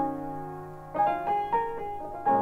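Piano playing free-improvised jazz: a chord struck at the start rings on and fades, then several more chords and notes are struck in quick succession from about a second in.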